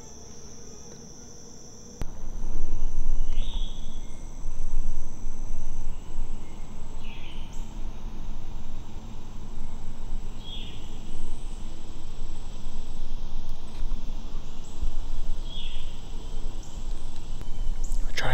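A steady, high insect drone for the first two seconds. Then, from a cut, a much louder low rumbling noise takes over, with a short high chirp repeating every three to four seconds.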